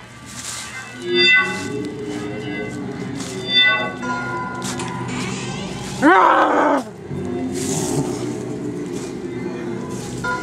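Spooky haunt soundtrack of sustained droning tones, with two louder swells in the first four seconds. About six seconds in comes the loudest sound, a brief, loud, wavering cry that rises and falls in pitch.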